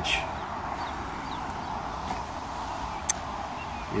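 Steady outdoor background noise with faint chirps, and one sharp click about three seconds in.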